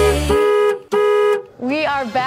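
Two honks of a car horn, each held at one steady pitch: the first lasts about three quarters of a second, the second about half a second, with a short gap between them.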